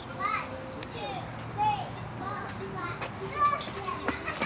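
Children playing at a playground: several short, high-pitched calls and shouts from kids' voices, no words clearly spoken.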